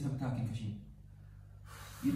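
A woman's voice moaning in pain, trailing off under a second in, then a gasping breath near the end.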